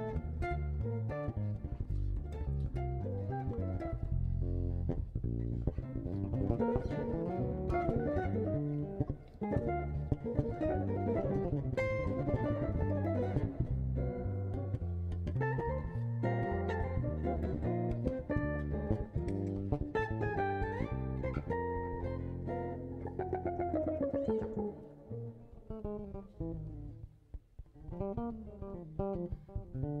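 Jazz guitar and bass duo playing a standard live, with busy plucked guitar lines over a walking bass. Near the end the playing thins out and grows quieter for a few seconds.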